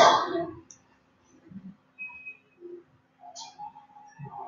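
Computer mouse clicking: one loud, sharp click right at the start that dies away over about half a second, followed by a few faint scattered small sounds.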